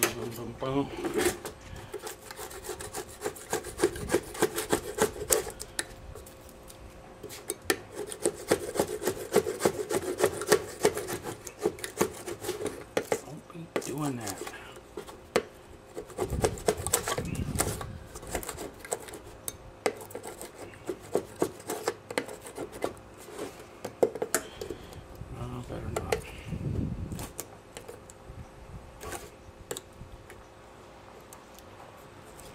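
Hand scraper scraping the remains of an old decal off a 15 HP Johnson outboard's engine cover, in many short rasping strokes with scattered clicks. A few duller bumps come in the middle and near the end.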